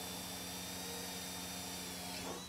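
Cordless drill running at a steady speed with a thin high whine, boring a pilot hole into the thick steel bottom rail of a shipping container.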